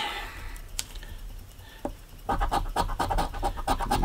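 A coin scratching the latex coating off a scratch-off lottery ticket's bonus spots. Light scraping at first, then rapid back-and-forth strokes from about two seconds in.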